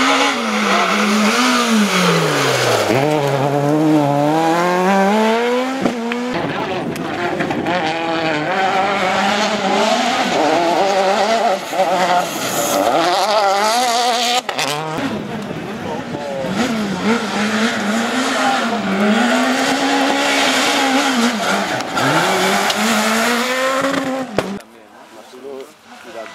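Rally car engines, one car after another, revving hard: each engine's pitch drops, then climbs in steps through the gears as the car accelerates. The sound changes abruptly twice, about 6 and 15 seconds in, as one car's pass gives way to the next.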